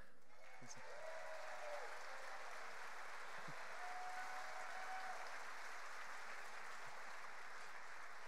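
Large theatre audience applauding steadily, with a few faint voices calling out in the crowd.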